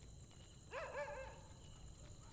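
A dog barking: a quick run of two or three barks just under a second in, over a faint, steady high-pitched hum.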